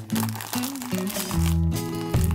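Background music, over the crinkling of cellophane wrap being scrunched by hand around a hay-filled cracker.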